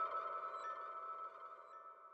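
Ambient electronic soundtrack music fading out: soft sustained drone tones with two faint chime-like pings about a second apart, dying away near the end.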